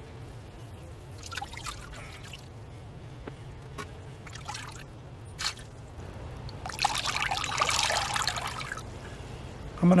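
Water dripping and trickling back into a plastic tub of rinse water as a wet wool skein is lifted out and twisted to wring it, with scattered drips at first and a heavier run of water for about two seconds near the end.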